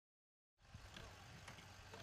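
Near silence, then faint, even background noise with a low hum that fades in about half a second in.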